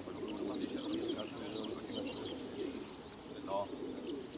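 Many racing pigeons cooing together in a transport truck's crates, a dense steady mass of overlapping coos, with short higher chirps of small birds over it.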